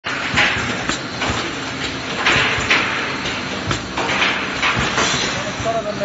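An automatic aerosol can filling line running, with short hisses of compressed air from its pneumatic actuators one to two times a second over the clatter and knocking of metal cans and machine parts.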